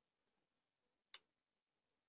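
Near silence with one faint mouse click a little over a second in.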